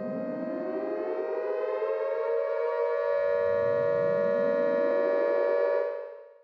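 Siren-like intro sound effect: a steady held tone with two slow rising sweeps that climb up into it, the second beginning about three seconds in, fading away at the end.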